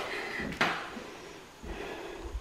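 Interior door being handled and pushed open: a sharp knock or clack a little over half a second in, then a few low thuds near the end.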